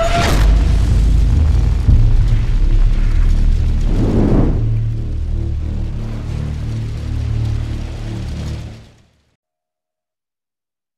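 Intro music for a logo animation, built on a heavy, deep low rumble. A sharp boom comes just after it begins and a swell of noise about four seconds in. It cuts off suddenly about nine seconds in.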